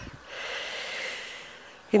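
A woman's long, soft intake of breath; she starts speaking again right at the end.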